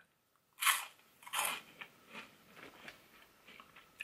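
A person biting into a puffed corn snack (barbecue corn puff), with two crisp crunches in the first second and a half, then lighter, softer chewing.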